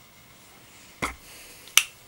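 Two sharp clicks about 0.7 s apart, the second louder, over a quiet background.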